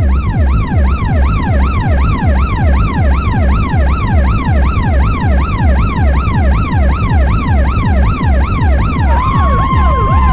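Electronic techno loop: a synth line sweeps up and down in pitch about three times a second, like a siren, over a steady kick drum. About nine seconds in, a held high synth note comes in.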